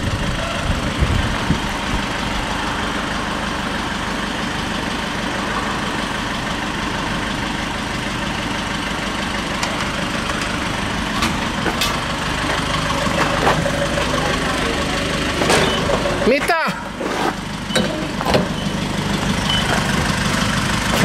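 A vehicle engine idles steadily at a fuel pump. In the second half come several clicks and knocks as the diesel nozzle is lifted from the pump and brought to the car's filler.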